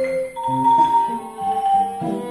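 Live trio of violin, wooden marimba and acoustic guitar playing a Costa Rican patriotic melody together, the marimba's struck notes over held violin notes and guitar accompaniment.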